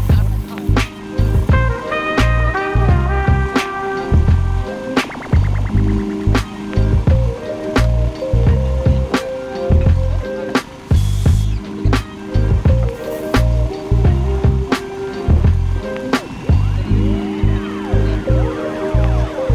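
Background music with a steady beat of bass and drum hits under melodic notes.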